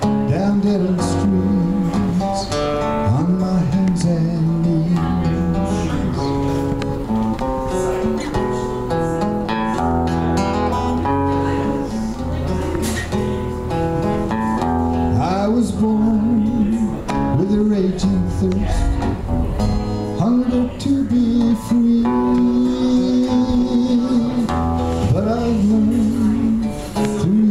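A man singing live over his own acoustic guitar, the voice held on long wavering notes above steadily played guitar.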